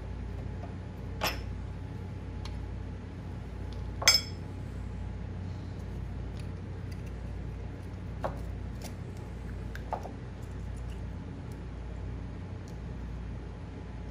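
Sparse metallic clinks and taps of hands, tools and a main bearing cap against the cast-iron crankcase of a McCormick-Deering engine as the cap is taken off, the loudest, ringing clink about four seconds in, over a steady low hum.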